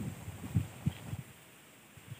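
A few soft, low thuds roughly a third of a second apart, dying away about a second and a half in.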